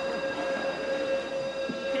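A steady mechanical whine held on one pitch, over a background of general room noise.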